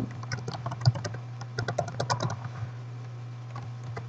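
Typing on a computer keyboard: two short runs of quick keystrokes about half a second apart, over a steady low hum.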